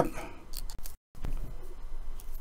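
Faint clicks and light rustling of hands handling a thin strand of fly-tying wire at the vise. The sound cuts out completely for an instant about halfway.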